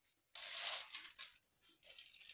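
Metal-beaded necklaces clinking and jingling as they are handled: a burst of jingling starts about a third of a second in and dies away after about a second, followed by a few light clicks.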